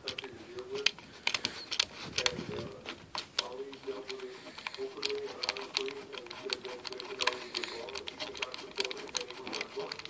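Irregular small clicks and ticks from fingers screwing a coaxial cable's F-connector onto the cable box's threaded metal port, with handling knocks. A faint voice-like murmur sits underneath.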